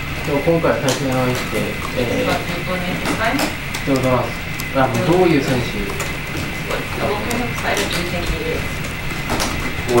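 Speech: an interviewer asking a question, over a steady background hum.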